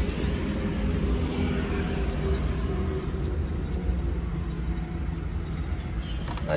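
Inside the cabin of a 2004 Daewoo Magnus, the engine idles with the air conditioning running: a steady low hum under an even hiss of air.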